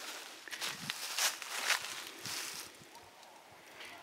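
Footsteps in dry leaf litter, several steps during the first two and a half seconds, then quieter.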